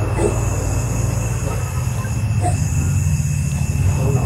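A steady low droning hum, with a thin steady high tone above it.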